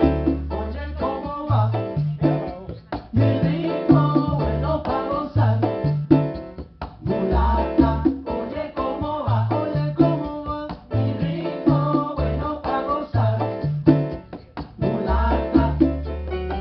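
Live Latin jazz band playing, piano over a repeating bass line.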